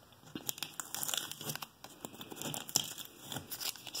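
Blue painter's tape being peeled off a drywall wall by hand: an irregular run of crackling and tearing.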